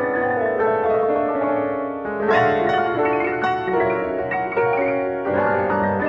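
Piano music played back from a MIDI file: a busy many-note passage with the sustain pedal held, so the notes ring into each other, and a bright chord struck about two seconds in.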